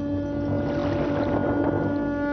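A conch shell (shankh) blown in one long, steady, horn-like note, with a dense noisy clatter underneath.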